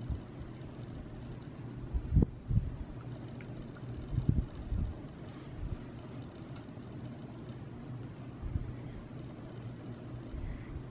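Steady low hum with a handful of short, dull low thumps, the loudest about two seconds in and another pair around four to five seconds.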